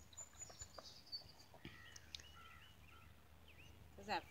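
Near silence outdoors, with faint scattered bird chirps and a few soft clicks in the first couple of seconds.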